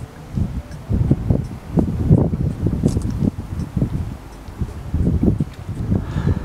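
Wind buffeting the camera's microphone in irregular gusts, a low rumbling that rises and falls.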